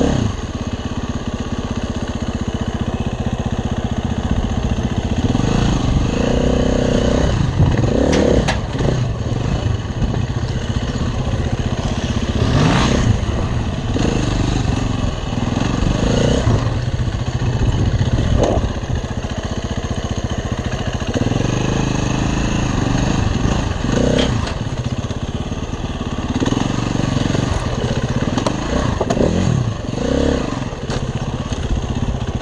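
KTM enduro motorcycle engine heard from on the bike, running at low speed with the throttle opened and closed again and again, so the revs rise and fall every few seconds.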